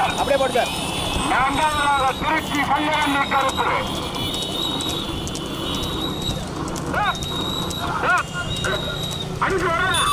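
A man's voice calling out in quick shouts that swing sharply up and down in pitch, typical of live race commentary, over a steady low drone of motorcycle engines. The calling thins out through the middle and picks up again near the end.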